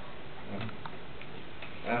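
Room tone with a steady low hum and a few faint, scattered ticks and clicks; a voice starts speaking right at the end.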